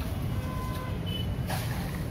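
Steady low background rumble, with two faint short tones about halfway through.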